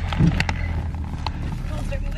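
Steady low rumble inside a car, with a few knocks and rustles of a straw hat and bags being handled in a crowded back seat in the first half second.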